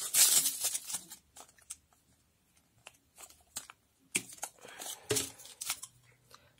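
Clear plastic packaging crinkling and tearing as a nail-art brush is pulled out of its sleeve, loudest in the first second, followed by scattered light clicks and rustles of handling.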